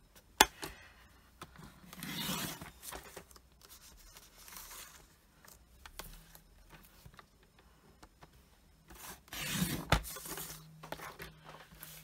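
A sheet of champagne foil card is handled and slid over a paper trimmer, making scraping and rustling sounds. There is a sharp click about half a second in and a thump near the end.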